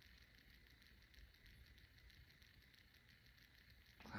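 Near silence: faint, steady room tone with a light hiss.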